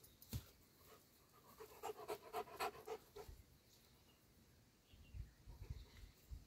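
A large dog panting quickly and faintly, about six breaths a second, for a couple of seconds in the middle. A few soft low thumps follow near the end.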